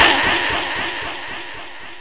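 A man's loud amplified voice echoing through a public-address system and fading away over the first second or so, leaving a low, steady background hiss.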